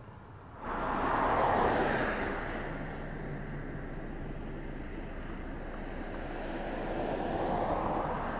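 Road traffic: tyre and engine noise of passing cars, swelling about a second in, settling to a steady hiss, then building again near the end as another car approaches.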